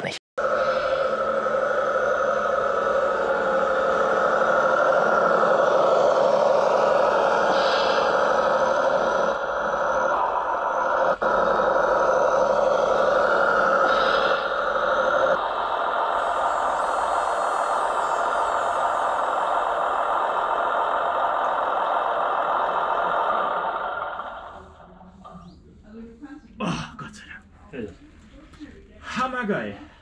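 Radio-controlled model tractor's engine sound running steadily, then cutting off about four seconds before the end.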